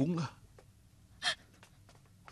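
The last word of a spoken line, then a single short, sharp intake of breath a little over a second in; otherwise quiet.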